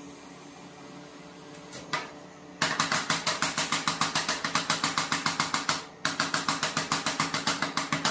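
Metal spatulas chopping ice cream mix on a stainless steel cold plate: a fast, even run of metal-on-metal strikes, about eight a second, starting nearly three seconds in, with a brief pause about six seconds in. A steady low hum from the cold plate machine runs underneath.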